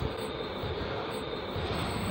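Steady, even background noise with no distinct events, picked up by a handheld phone's microphone while walking.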